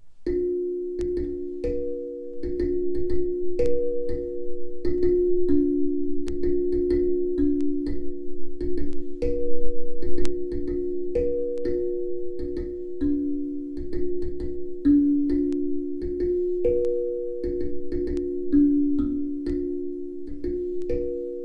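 Tuned steel drum struck with a felt mallet, playing a slow melody on a few low notes. The strikes come about twice a second, and each note rings on and overlaps the next.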